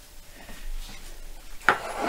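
Quiet kitchen room tone, then near the end a sudden clatter of cookware knocking against a china plate, with a short ring.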